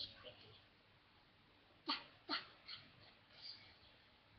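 A pet dog making a few short, faint vocal sounds, mostly in the second half.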